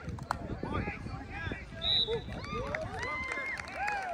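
Many voices of players and spectators talking and calling out at once, with a brief high whistle blast about halfway through.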